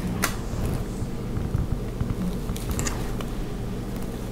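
Hands handling cotton fabric and tissue paper pattern while pinning a pleat in place: soft rustling with a few light clicks.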